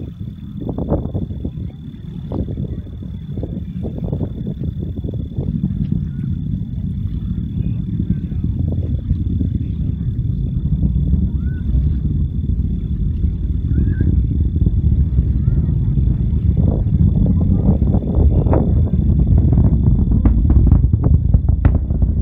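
Distant rumble of a SpaceX Falcon 9's first-stage engines in ascent, a low crackling sound that grows steadily louder and is loudest near the end.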